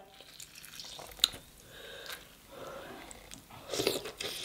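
Soft, wet eating sounds of sauce-soaked king crab meat being handled and chewed, with a sharp click about a second in and a louder bite into the crab near the end.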